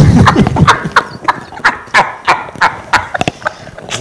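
Hearty laughter with quick, repeated hand claps or slaps, about four to five a second, fading near the end.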